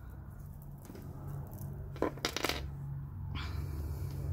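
Hands handling a beaded cord necklace: soft rustling of the cord with a few sharp clicks of stone beads and metal links about two seconds in, over a low steady hum.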